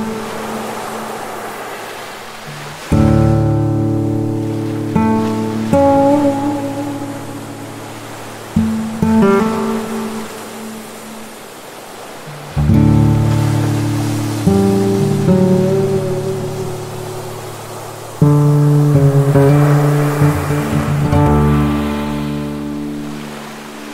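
Acoustic guitar playing slow, gentle chords, each struck and left to ring and fade, a new one every few seconds, over the soft wash of surf on a beach.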